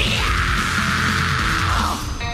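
Loud, aggressive heavy rock music with distorted guitar and drums; a long, harsh held note runs over it and drops away near the end.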